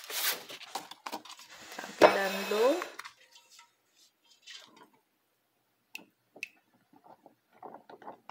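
A person's voice briefly at the start and again about two seconds in, then quiet handling of a rice-paper wrapper in a stainless steel bowl of water: two light clinks about six seconds in and faint water sounds near the end as the wrapper is dipped and lifted out.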